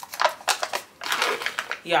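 Plastic produce bag of grapes crinkling and rustling as it is handled, in short irregular bursts.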